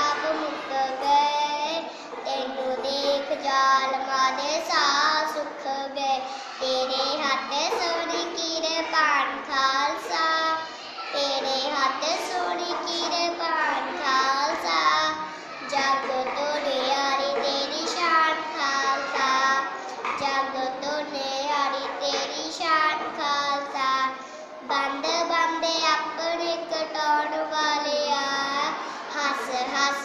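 A young child singing a Punjabi devotional poem in praise of the Khalsa, one voice in a sing-song melody, line after line with short breaks between phrases.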